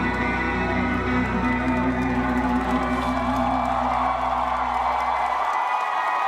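Live band holding the closing chord of a ballad, its bass cutting off near the end, while audience cheering swells from about halfway through.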